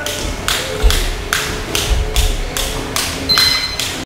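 A steady run of thuds, about two or three a second.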